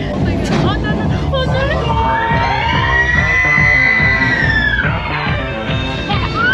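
Riders in an open dune buggy screaming and whooping, with one long scream near the middle that rises and falls, over the buggy's low rumble. Music plays underneath.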